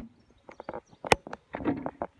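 Irregular clicks and knocks of a plastic watering can being handled, the sharpest about a second in, with a brief rustle near the end.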